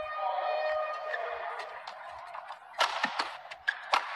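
Badminton rally: sharp racket strikes on the shuttlecock, several in quick succession in the second half, over a faint arena hubbub. A held pitched tone fades out in the first second and a half.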